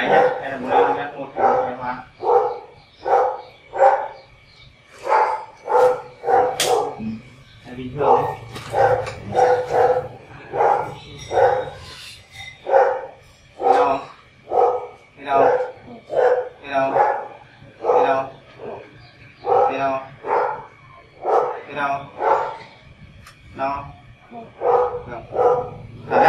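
A dog barking over and over, short barks coming about one to two a second without a break.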